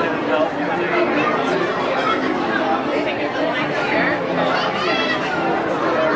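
Crowd chatter: many people talking over one another at once, a steady babble with no single voice standing out.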